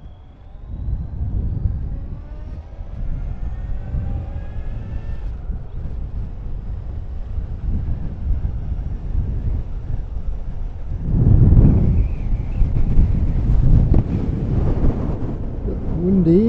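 Suzuki GSX1400 inline-four motorcycle pulling away. Its engine note rises steadily for about five seconds, breaks at a gear change, then runs on under a low rumble of wind, with a louder surge around eleven seconds in.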